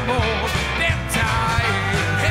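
Live dansband pop-rock played by a full band: drums and bass keeping a steady beat under electric guitar, keyboards and a brass section of trumpet and trombone.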